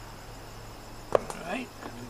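A single sharp tap about a second in, a hand tool knocking against the board where body filler is being mixed, followed by a brief spoken word.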